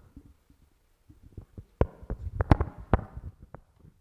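A handheld microphone being handled and passed from hand to hand: low thumps and rubbing, with a few sharp knocks, the loudest about two and a half seconds in.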